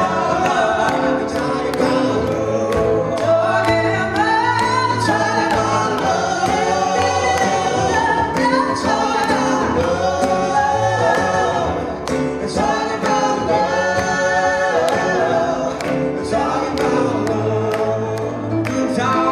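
Live pop song with a small vocal group singing in harmony over acoustic guitar and keyboard, with a steady beat of clicks.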